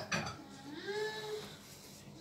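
A faint, drawn-out vocal sound that rises and then falls in pitch, just after a short sharp sound at the very start.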